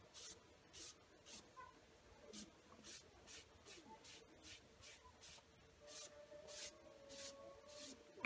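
Faint, quick swishes of a sponge dragged across a glazed wooden board, about a dozen short strokes, as the glaze is wiped back off the painted surface.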